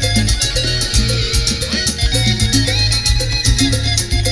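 Live cumbia band playing, with a steady beat of bright percussion strokes over a strong bass line.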